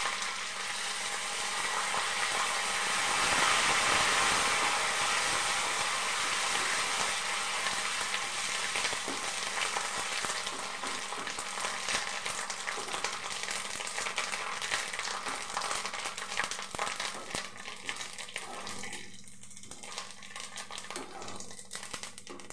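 Neem leaves sizzling and crackling in hot oil in a small kadai. The sizzle is loudest a few seconds after the leaves go in, then slowly dies down as they fry, and a spatula stirs them near the end.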